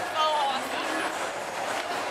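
Dense crowd chatter, many overlapping voices blending into a steady din, with one voice briefly raised a little after the start.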